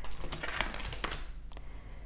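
Tarot cards handled on a tabletop: a run of light taps and slides as cards are picked up and laid down.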